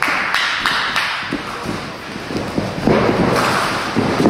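Wrestlers' bodies and feet thudding on a padded ring mat, with a sharp hit right at the start and a few lighter knocks over the next second and a half, then a louder stretch of scuffling noise about three seconds in.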